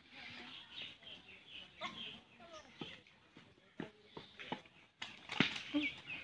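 Birds chirping repeatedly, with faint voices of people talking, and a single sharp knock near the end.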